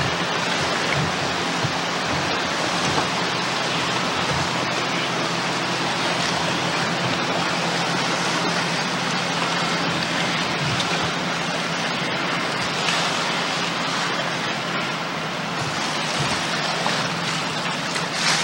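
Steady rushing noise of wind and choppy water on an old hand-held Video 8 camcorder's built-in microphone, with gusty low buffeting and a faint steady low hum underneath.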